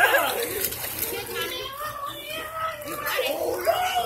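Indistinct voices of children and adults talking and calling out, with children playing in the pool.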